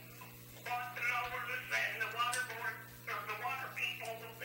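Indistinct talk picked up from across a small, echoey meeting room, over a steady low electrical hum; the talk pauses briefly at the start.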